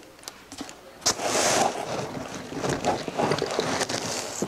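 Hands rummaging in a cardboard shipping box and pulling out a coiled MIG welding gun cable: rustling and scraping of cardboard and packaging with small knocks. It starts about a second in, after a quieter moment of a few light clicks.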